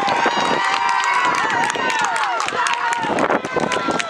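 Voices calling out in long, drawn-out shouts that bend and fall in pitch at their ends, over a busy run of short clicks and knocks.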